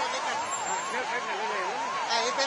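Fire engine siren sounding a fast up-and-down wail, about three sweeps a second, with voices in the background.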